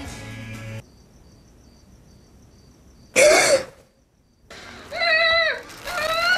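Horror film trailer audio: a hushed stretch with a faint, high, repeating tone, a sudden loud burst about three seconds in, then a girl's frightened whimpering cries from about four and a half seconds.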